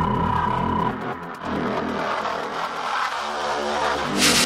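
Electronic dance music from a DJ mix in a breakdown: a held tone and the heavy bass cut out about a second in, and a thinner synth build-up with stacked tones swells toward the next drop near the end.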